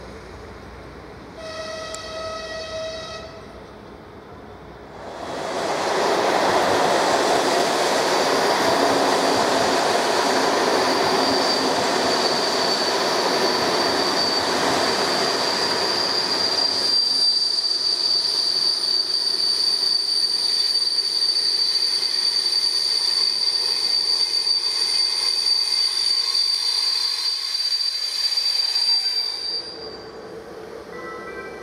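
A train horn gives one short blast about two seconds in. A locomotive-hauled train of passenger coaches then runs in loudly over the rails. From about halfway a steady high-pitched squeal of the brakes sets in as the train slows, and it holds until the sound cuts off at the end.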